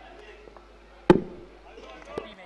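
A single sharp crack of a cricket bat hitting the ball about a second in, with a short ringing tail, over faint background voices.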